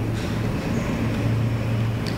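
A steady low hum with an even hiss of background noise, holding level throughout.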